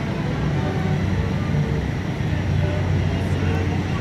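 Steady low drone of a ferry's engines, with people's voices murmuring in the background.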